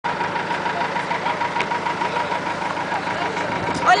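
A vehicle engine idling steadily, with an even rapid pulse of about five or six beats a second.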